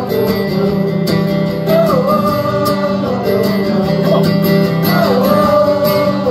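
A man singing live with his own acoustic guitar accompaniment: long held vocal notes that bend in pitch, over steady strumming.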